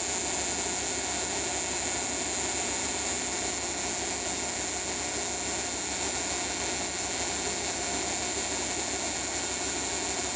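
Alternator-driven Tesla coil rig running steadily while its secondary arc sparks: an even machine hiss with a fine, fast buzz low down.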